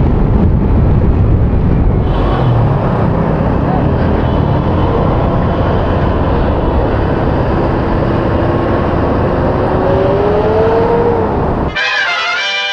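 Riding noise from a Honda Click 125i scooter in city traffic: a dense, steady mix of wind, engine and surrounding traffic. In the last few seconds a steady tone slowly rises in pitch.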